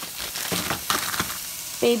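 Chopped onions sizzling in oil in a hot frying pan, a steady hiss with a few sharp clicks.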